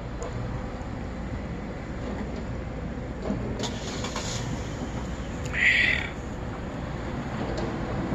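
Steady low rumble of street traffic outdoors, with two short bursts of hiss, one about three and a half seconds in and a louder one about five and a half seconds in.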